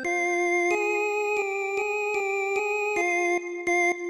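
Yamaha PSR-series arranger keyboard playing a slow single-note melody with a bright synth tone, about nine held notes in turn. It is the opening phrase of a mor lam song's intro in F minor, played note by note for practice.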